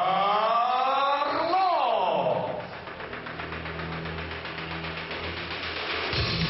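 A ring announcer's long, drawn-out call in a large echoing hall, the voice sliding up and then down in pitch for about two and a half seconds. After it comes a quieter low steady hum.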